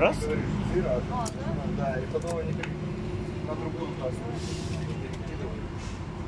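A steady low engine hum, like a vehicle idling close by, under faint voices, with a few sharp clicks in the first half.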